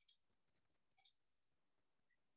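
Two faint clicks of a computer mouse, one right at the start and another about a second in, each a quick double click-clack; otherwise near silence.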